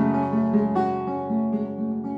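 Classical nylon-string guitar: a chord left ringing while single notes are plucked over it, a few times in a slow, loose run.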